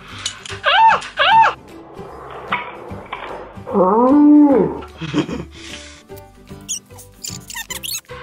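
Background music with a woman's high-pitched squeals of pain as wooden clothespins pinch her face: two short squeals about a second in, and a longer whine around four seconds in.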